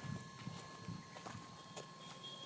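Faint footsteps and light scuffs on dry, sandy ground, with a few soft clicks, over steady faint high-pitched tones.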